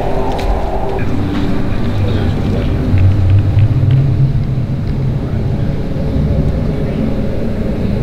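A loud, steady low rumble that swells for a second or so about three seconds in.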